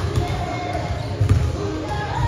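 Basketballs bouncing on a hardwood gym floor, a few separate thuds, in a large gym.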